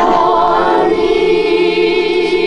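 Orthodox church choir singing a liturgical response during a prayer service, several voices holding chords together with a wavering vibrato in the upper voice, entering sharply at the start.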